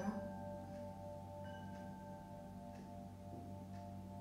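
Soft meditation music: steady, sustained singing-bowl-like tones held over a low drone.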